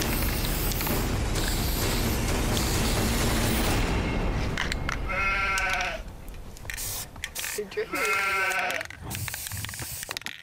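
Aerosol spray-paint can hissing for about the first five seconds, then a sheep bleats twice, each call about a second long and a few seconds apart.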